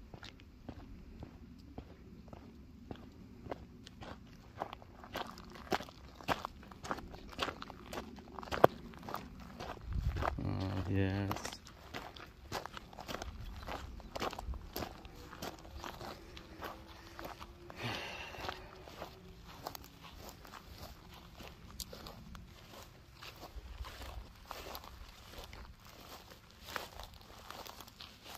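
Footsteps walking over gravel and then through grass, a long run of irregular crunching steps. About ten seconds in there is a short low vocal sound.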